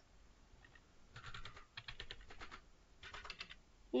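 Faint typing on a computer keyboard: quick runs of key clicks in three short bursts, starting about a second in.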